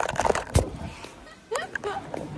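A phone being handled while filming, with knocks and rubs on the microphone, the loudest a sharp bump about half a second in. Brief voice sounds come near the end.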